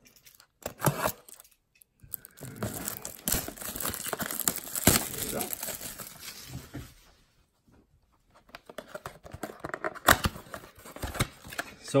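Cardboard trading-card blaster box and its wrapping being torn open and the foil card packs pulled out: irregular crinkling, rustling and tearing, with a short lull about seven seconds in.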